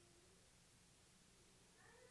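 Near silence: room tone with a faint low hum, a faint brief tone right at the start and a faint wavering call just before the end.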